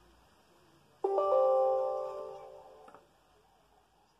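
Windows system chime from the laptop's speakers: a chord of several steady tones that starts suddenly about a second in and fades out over about two seconds. It marks a User Account Control permission prompt coming up.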